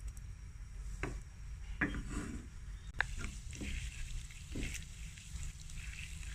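Butter melting in a nonstick frying pan, with a silicone spatula scraping and tapping against the pan about six times and a faint sizzle starting as the butter foams. A steady low hum runs underneath.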